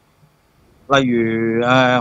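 A man's voice: a pause of almost a second, then one long drawn-out syllable of Cantonese speech, held as a hesitation filler ("例如…") mid-sentence.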